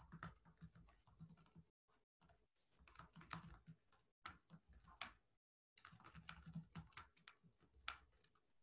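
Faint, irregular typing and clicking on a computer keyboard.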